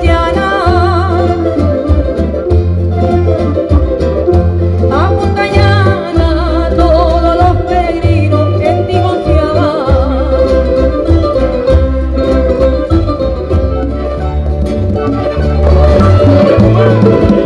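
Live Canarian folk music from a parranda group: plucked string instruments and singing over a pulsing bass beat.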